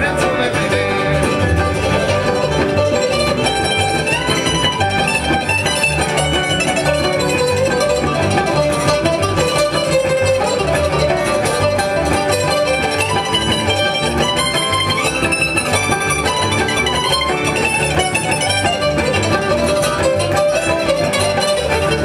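Acoustic bluegrass string band of guitar, banjo, mandolin, fiddle and upright bass playing an instrumental break, with a steady plucked rhythm under a running melody.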